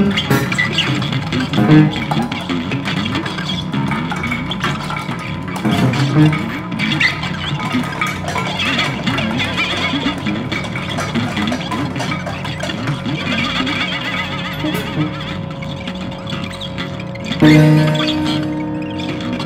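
Free-improvised experimental music: a dense, noisy texture of guitar and electronics with scattered clicks and rattles under a couple of steady held tones. A louder, low-pitched swell comes in near the end.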